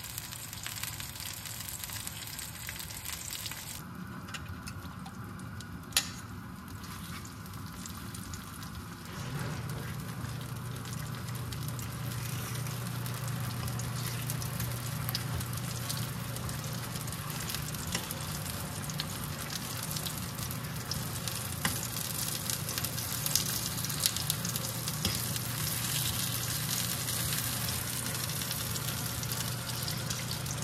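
Tomato slices sizzling and crackling in hot oil in a small nonstick frying pan on a gas burner. A single sharp click comes about six seconds in, and from about nine seconds in the frying grows a little louder over a steady low hum.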